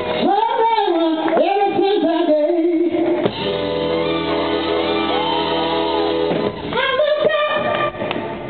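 Female soul singer singing live with a band behind her. Her voice, with a wide vibrato, carries the first three seconds, the band holds sustained chords for a few seconds, and she comes back in near the end.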